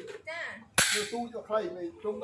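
A single sharp hammer blow on a steel water-pump motor shaft, a little under a second in.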